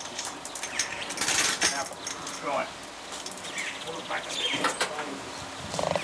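Irregular metal clinks and knocks as an engine is worked down into an Austin-Healey 100/6's engine bay, with a couple of brief rattles, one of them near the end.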